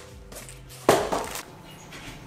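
Cardboard and plastic mail packaging being handled and opened, with one sharp loud rustle about a second in that quickly dies away.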